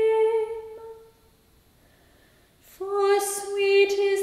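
A lone woman's voice chanting an English psalm verse in plainchant: a held final note fades out about a second in, followed by a pause of about a second and a half, and then the next verse starts on a steady reciting note.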